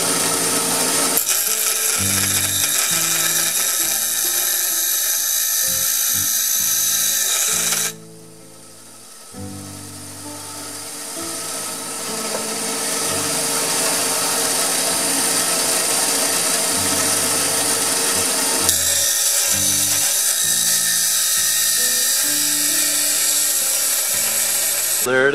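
Bench grinder wheel grinding the edges of steel armor finger plates, a steady high hiss. About eight seconds in the grinding drops away, then builds back up over the next few seconds. Background music with stepped low notes plays throughout.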